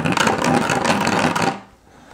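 Hand deburring tool scraping around the edge of a drilled hole in a plastic 5-gallon bucket, shaving the hole wider. The rapid scraping stops abruptly about one and a half seconds in.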